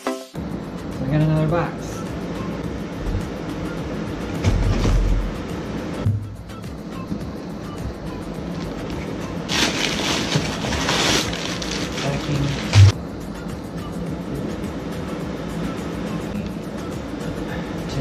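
A cardboard shipping box being opened by hand, with packaging rustling and a burst of cardboard or tape noise about ten seconds in, then a single thump.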